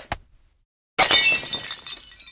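A sudden shattering crash about a second in, then fading away. It sounds like breaking glass and is a smash sound effect for an egg puppet breaking to pieces.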